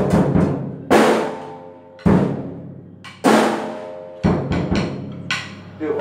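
Acoustic drum kit: cymbal and bass drum struck together about once a second, the cymbal ringing out between strokes, then a quick run of lighter drum hits about four seconds in.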